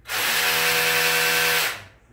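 Small cordless drill running at one steady pitch for about a second and a half, then spinning down.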